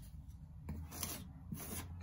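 A 2-inch plastic putty knife scraping joint compound across a drywall ceiling, with two soft strokes in the second half.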